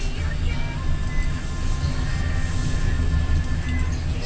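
Westinghouse Selectomatic traction elevator car travelling, with a steady low rumble, while background music plays.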